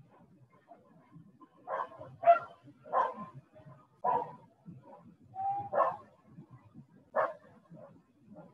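A dog barking, about six short barks at uneven intervals.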